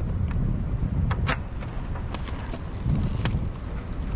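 Wind rumbling on the microphone, with about five sharp clicks and taps as hands handle the mast's broken aluminium gooseneck fitting, whose pin has sheared.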